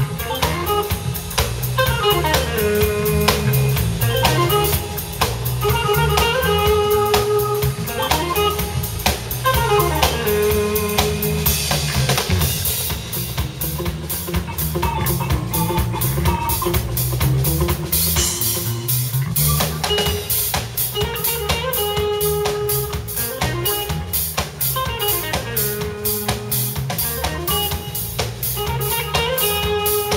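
Live band playing an instrumental jam: drum kit, electric guitar, electric bass and keyboard, with a figure repeating about every two seconds and louder cymbal washes a little before the middle and again a little after it.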